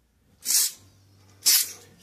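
Two short hissing bursts from an aerosol body spray can, about a second apart.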